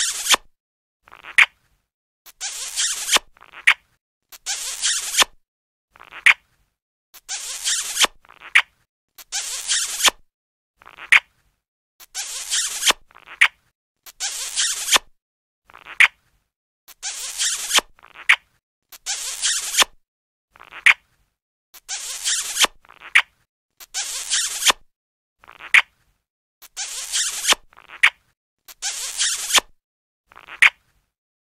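Cartoon kissing sound effect played in a loop: short smacking kisses over and over, about one every second, alternating a brief high squeak with a longer hissy smooch.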